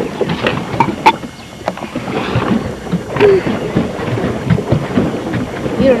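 Pedal boat underway on a pond: water churning from the paddle wheel with a steady wash and irregular small knocks and creaks from the boat.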